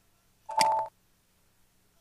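A short electronic computer beep about half a second in, lasting under half a second, made of two steady tones with higher overtones. It is the system sound as the SAP workflow definition is saved and activated.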